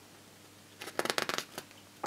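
A picture book's paper page being turned by hand: a short run of quick rustles and crackles starting just under a second in.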